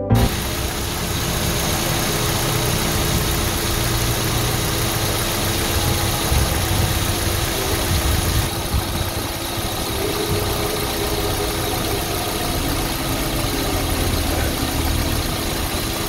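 Hyundai H1 van's engine idling steadily with the bonnet open.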